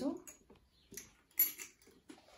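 Glass knocks and clicks as a swing-top glass preserving jar is shut: a small click about a second in, then a sharp glassy click about a second and a half in, with a lighter one just after.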